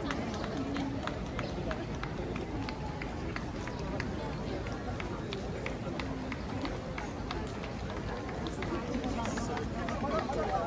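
Footsteps on asphalt at a steady walking pace, about two a second, over the chatter of an outdoor crowd.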